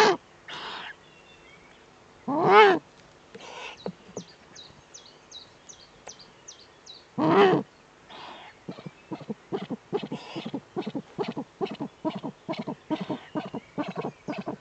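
Eurasian eagle-owls calling at the nest: three loud, harsh calls, each about half a second and rising then falling in pitch, then from about eight seconds in a fast, steady run of short clicking calls, several a second.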